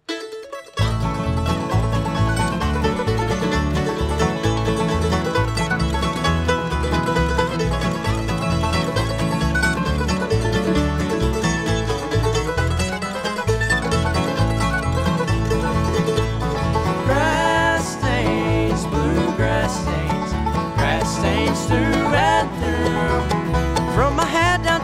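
Bluegrass band playing an instrumental intro on banjo, acoustic guitar, fiddle, mandolin and upright bass, starting suddenly about a second in over a steady bass beat.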